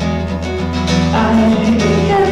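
Acoustic guitar strummed and picked in a steady pattern; about a second in, a man's singing voice comes in over it.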